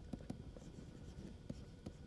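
Faint handwriting with a stylus on a writing tablet: irregular light taps and short scratches of the pen strokes, several a second, as words are written.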